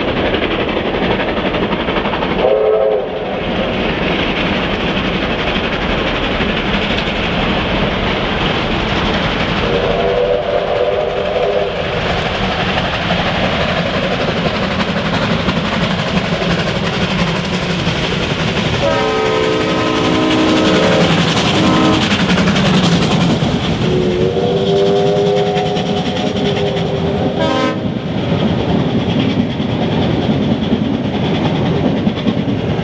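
Victorian Railways R-class steam locomotives hauling a passenger train at speed: a steady loud rush of running and rail noise, with four whistle blasts over it. The first, about two seconds in, is a short toot; the others come at about ten, nineteen and twenty-four seconds, each lasting two to three seconds.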